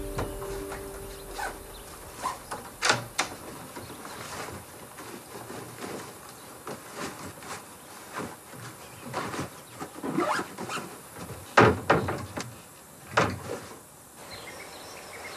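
Cupboard doors and drawers knocking and clicking as someone rummages through a wardrobe, with clothes rustling: a scattered series of short handling sounds, loudest in two clusters near the end.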